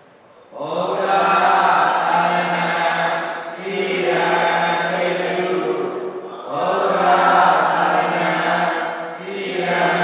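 Buddhist devotional chanting in unison, recited in long, evenly pitched phrases of about three seconds each, with brief pauses for breath between them.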